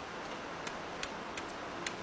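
A few sharp ticks at uneven intervals over a steady low hiss and faint hum.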